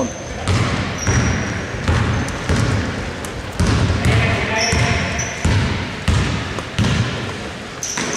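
A basketball being dribbled on a hardwood court in a large gym, with sharp bounces every half second to a second and short high sneaker squeaks. Players' voices are heard in the background.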